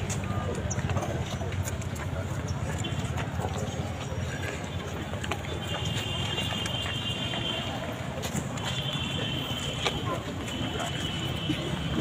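Indistinct chatter of a small group of people outdoors, with no clear words, over steady background noise and scattered small clicks.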